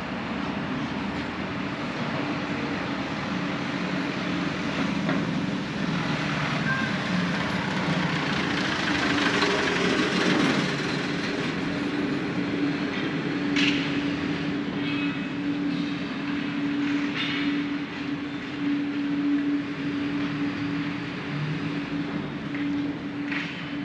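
Steady mechanical hum over city street noise, the noise growing louder around the middle, with a few short clatters in the second half.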